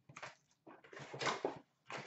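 Foil wrapper of an Upper Deck hockey card pack crinkling and tearing as the pack is ripped open, in several short rustles, the longest about a second in.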